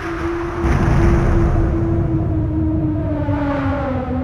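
Early-hardcore DJ mix in a breakdown: the kick drum has dropped out, leaving a held synth tone that slowly sinks in pitch over a dense low rumble. A second, higher tone slides down near the end.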